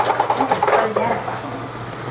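A rapid, even run of clicks, about ten a second, lasting about a second, with voices in the background.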